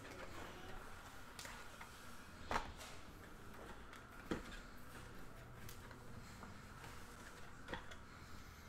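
2019 Bowman Draft baseball cards handled quietly as they are sorted by hand, with three separate short, sharp card clicks, the loudest one about two and a half seconds in.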